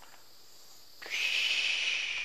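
Handheld butane gas torch hissing steadily, starting suddenly about a second in, as it burns wood chips to make smoke.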